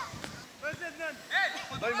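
Spectators shouting short, high-pitched syllables of encouragement over and over ("allez, va, va, va"), starting about a second in and getting louder. A single sharp click comes just before the shouting.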